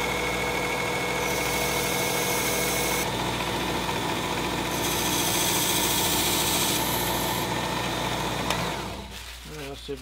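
Work Sharp Ken Onion Elite belt sharpener running steadily with a fine belt at low speed, while a carving knife blade is drawn across the belt in passes, the grinding hiss rising and falling with each pass. The motor stops about nine seconds in.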